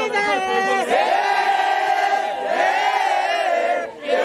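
A group of voices singing together in harmony, in three long held phrases, with no clear beat underneath.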